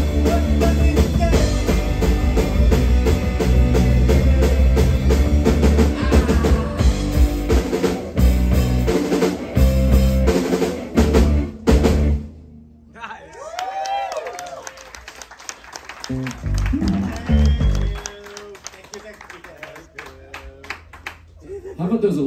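Live rock band of electric guitar, electric bass and drum kit playing loudly, then stopping abruptly about twelve seconds in. After the stop, quieter electric guitar notes with bends and a few bass notes carry on.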